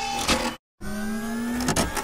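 3D printer stepper motors whirring with a steady whine that rises slightly in pitch, cut off by a brief dead silence about half a second in.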